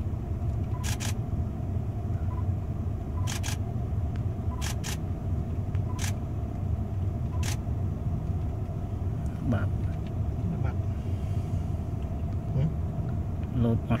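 A steady low rumble runs throughout. Over it come about eight sharp clicks in the first half, several in quick pairs about a tenth of a second apart.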